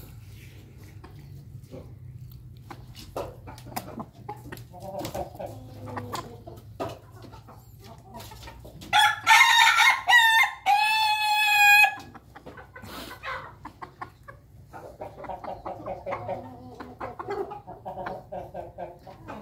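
A rooster crowing once, loud, for about three seconds: a broken, stuttering first part followed by one long held note. Chickens cluck softly before and after, with scattered light taps.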